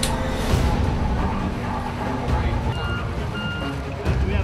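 Two short electronic beeps about three seconds in, over low rumbling, with a brief burst of noise at the very start.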